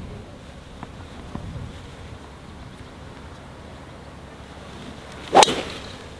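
A TaylorMade SiM Max driver striking a golf ball off the tee: one sharp crack about five and a half seconds in, after a quiet stretch. It is a well-struck drive.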